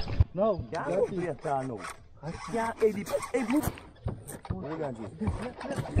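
Indistinct voices talking in short bursts, with scattered rubbing and clicking noises.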